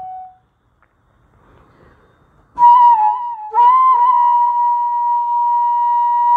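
Solo flute playing raga Jhinjhoti. A lower held note fades out at the start, followed by a pause of about two seconds with only a faint breathy hiss. Then a new phrase starts sharply, dips in pitch, breaks briefly and settles into a long held higher note with small ornaments.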